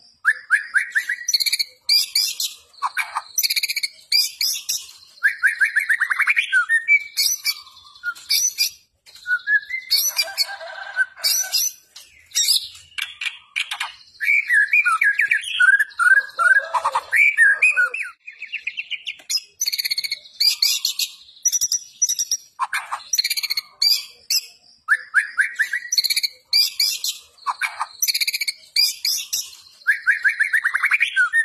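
White-rumped shama (murai batu) singing a long, varied song of rapid rattling trills, sharp high whistles and harsher buzzy notes in quick phrases with only brief pauses. It is sung in the energetic, insistent fighting style that keepers prize in a contest bird.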